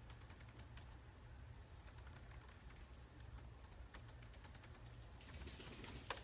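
Faint typing on a computer keyboard: soft, irregular key clicks. A brief, louder, higher-pitched sound comes near the end.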